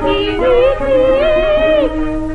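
Cantonese opera singing on an old gramophone record: a voice holds a long, wavering line over a small band's steady accompaniment.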